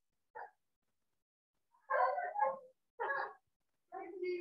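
Short calls from a pet animal, in three brief bursts; the longest comes about two seconds in.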